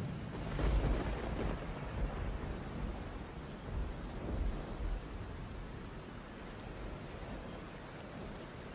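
Thunder and steady rain: a continuous hiss of rain with low rumbles of thunder, swelling about a second in and again around four seconds in.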